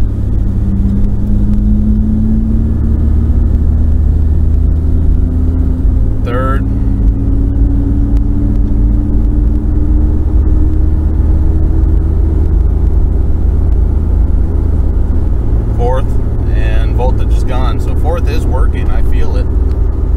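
Inside the cab of a 1991 Ford Explorer under way: a steady heavy rumble from the engine and road. The engine note rises gradually over the first dozen seconds as the truck accelerates.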